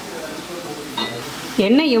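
Mullu murukku deep-frying in hot oil in a kadai: a steady sizzle of bubbling oil.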